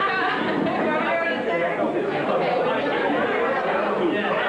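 Several people talking at once in a room, with overlapping chatter and no single clear voice.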